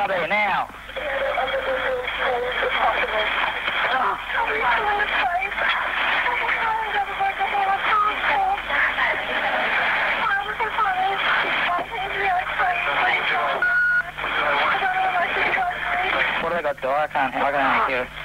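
Recorded police two-way radio traffic: voices over a narrow, crackly radio channel, garbled and hard to make out. A short steady tone sounds about fourteen seconds in.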